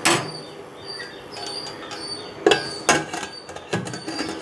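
Metal knocks and clanks of a stainless steel pressure cooker and its lid being handled and set in place: a sharp clank at the start, two knocks about two and a half and three seconds in, and another just before the end.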